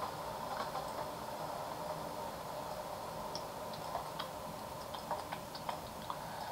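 A few faint, irregular clicks over a steady low room hum, made while lines are being drawn on a computer whiteboard.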